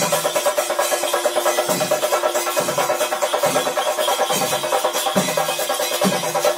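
Traditional ritual percussion music: drums played in a fast, dense rhythm, with a deep drum stroke that drops in pitch about once a second, over a steady held tone.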